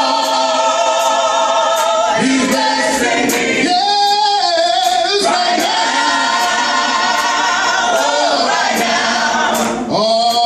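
A small mixed choir of men and women singing a gospel song a cappella, holding long sustained chords, with a male lead voice on a microphone.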